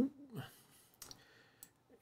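A few faint, short clicks about a second in, after a sentence trails off and a brief faint breath; otherwise near silence.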